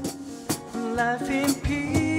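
A live acoustic band playing: two strummed acoustic guitars with drums keeping a beat, and a voice singing a wavering line about a second in.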